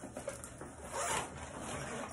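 Rustling, rasping handling noise as small items are picked up and moved, loudest about a second in.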